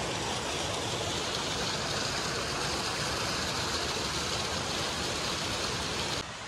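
Water pouring from inlets into concrete trout-farm raceways: a steady, even rushing noise that stops abruptly just after the end.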